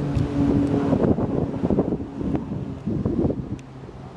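Wind buffeting the microphone, over the steady low drone of a distant circling air tanker's engines, which fades about a second in.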